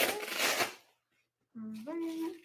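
Hook-and-loop (Velcro) fastening of a blood pressure cuff pulled apart as the cuff comes off the arm: one tearing sound lasting under a second.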